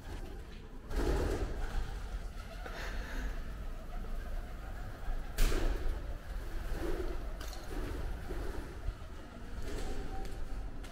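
Pigeons cooing in low, soft calls, with a sudden sharp clatter about five seconds in.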